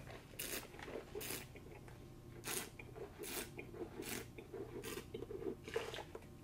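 A wine taster aerating a mouthful of red wine, drawing air through it over the tongue in about seven short, soft hissing slurps.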